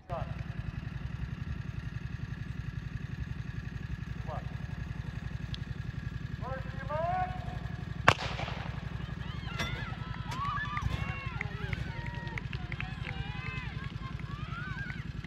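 A single starting-pistol shot about eight seconds in starts a cross-country race, followed by a crowd of voices shouting and cheering. A brief called command comes just before the shot, and a steady low rumble runs underneath throughout.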